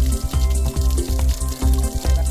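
Water gushing from a tube-well pipe and splashing into a basin and onto the ground, a steady hissing splash. The well flows on its own day and night, with nobody working the hand pump. Background music with steady low notes plays underneath.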